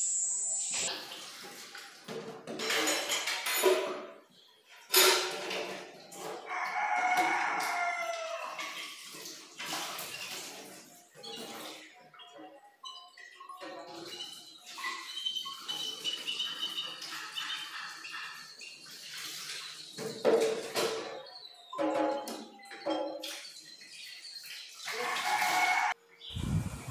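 A rooster crowing. The clearest crow is a drawn-out, falling call about six seconds in, lasting about two seconds, among scattered shorter bird calls and chirps and a few sharp knocks.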